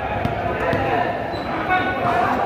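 Voices of people talking around the court, with a ball thudding on the court floor twice in the first second.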